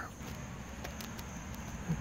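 Quiet background noise with a few faint light clicks, a pause between stretches of talk.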